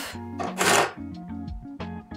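Scissors snip once through a strand of yarn about half a second in, a short rasp, over soft background music.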